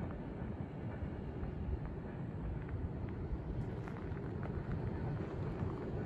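Empty coal hopper cars rolling past at speed: a steady rumble of wheels on the rails, with a few faint clicks.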